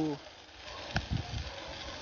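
Chicken sizzling on a grill, a soft steady hiss, with one sharp click about a second in.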